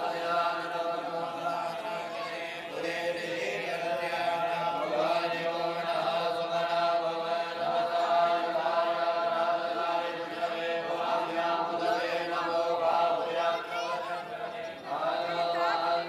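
A group of Hindu priests chanting mantras in unison, a steady, drawn-out chant of several voices with slow rises and falls in pitch.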